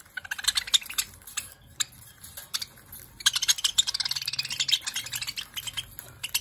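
Budgerigars pecking and cracking seed at a plastic feeder: a quick, irregular run of small dry clicks and taps, busiest in the second half.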